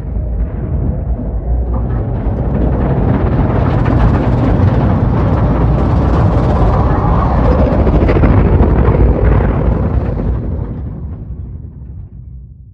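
A deep, loud cinematic rumble under the title card. It swells over the first few seconds, holds through the middle and fades away near the end.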